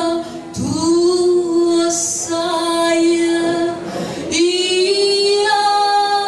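A woman singing a cappella into a microphone, unaccompanied, holding long sustained notes: one from just under a second in to nearly four seconds, then after a brief breath another held note from about four and a half seconds.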